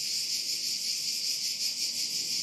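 Steady high-pitched chirring of crickets with a faint even pulse.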